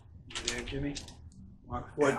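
Quiet, indistinct murmured speech mixed with crisp rustling and clicking of thin Bible pages being leafed through.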